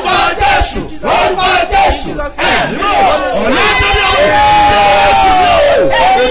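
A large congregation crying out together, many voices shouting at once with hands raised in prayer. Near the end one voice holds a long cry that slowly falls in pitch.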